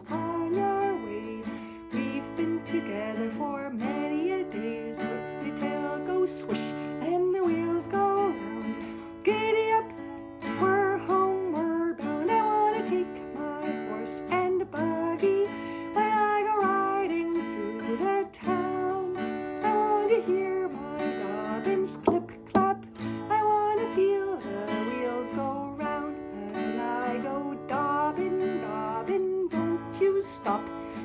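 A woman singing a children's song while strumming an acoustic guitar in a steady rhythm.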